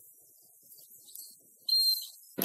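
A referee's whistle gives one short, loud blast near the end, a single steady high-pitched tone.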